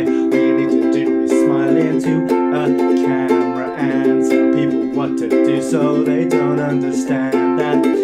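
Ukulele strummed in a steady rhythm under a man's singing voice.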